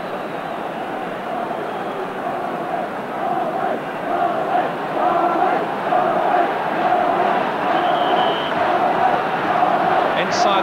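Large stadium crowd, with chanting that swells about halfway through.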